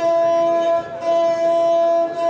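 Gusle, the single-string bowed folk instrument, sounding one steady held note with a brief dip just under a second in.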